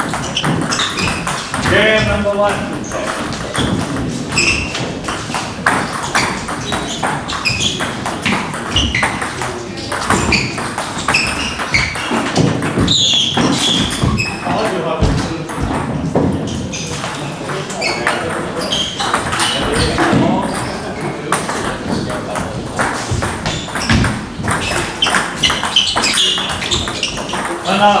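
Table tennis rally: a celluloid ping-pong ball knocked between bats and bouncing on the table in a run of short sharp clicks, with people talking over it.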